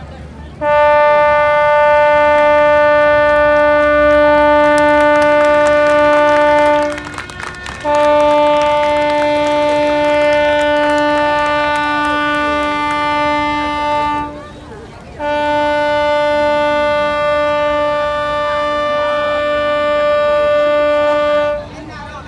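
A boat's horn blowing three long blasts, each about six seconds at one steady pitch, with short gaps between them.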